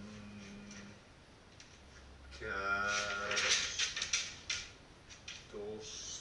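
A man's voice chanting a held, wordless 'om' as in meditation: a short note at the start, then a longer, louder one from about two seconds in, and a brief vocal sound near the end.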